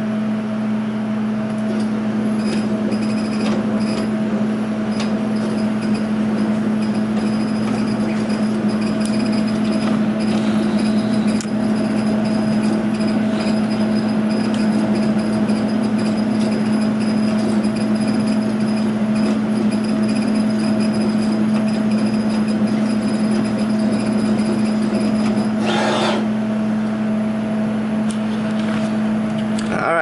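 K40 CO2 laser cutter running an engraving job: a steady hum from its fan and pump under the whirr of the stepper-driven head moving, with a brief louder rush near the end.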